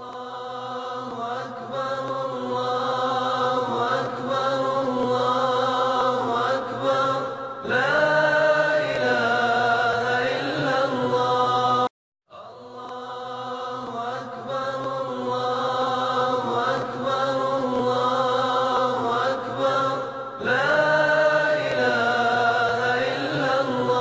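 Unaccompanied melodic religious chanting by a single voice, with long held notes that waver and glide. The same passage plays twice, cut by a brief silence about halfway through.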